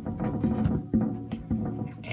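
Instrumental accompaniment music starting, with low plucked notes, mixed with sharp knocks and clicks of a phone being handled close to its microphone.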